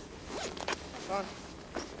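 Zippers of immersion survival suits being pulled, in a couple of short rasps, with the rustle of the suit fabric.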